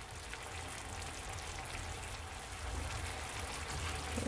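Chicken thighs sizzling and bubbling in a honey jerk sauce in a frying pan, a steady hiss as the sauce reduces and thickens.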